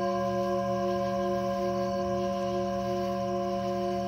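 Tibetan singing bowl ringing on after a strike: a steady low hum with several higher overtones held evenly together.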